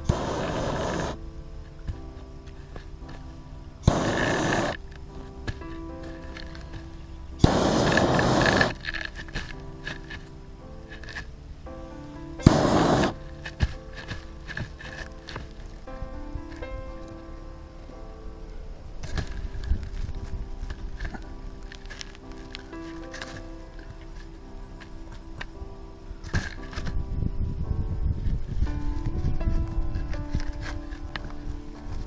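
Background music with a steady melody, broken by four short, loud bursts of hiss in the first thirteen seconds: a handheld burner fired briefly to burn planting holes through landscape fabric.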